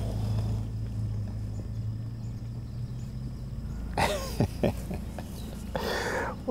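A low, steady hum for the first few seconds, then brief wordless vocal sounds from a person about four seconds in.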